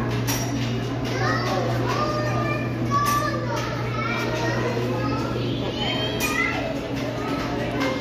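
Many children's voices chattering and calling out at once, over a steady low hum.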